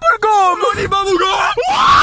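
A young man yelling and screaming, his voice climbing into a rising shriek near the end.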